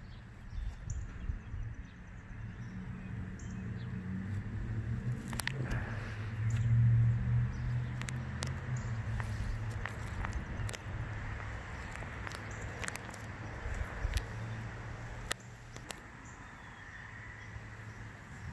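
Outdoor residential ambience: a low rumble that swells about seven seconds in and then eases, with scattered short, sharp high clicks or chirps throughout.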